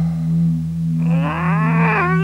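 Cartoon commercial soundtrack: a steady low humming note, joined about a second in by a groan-like pitched glide that rises steadily.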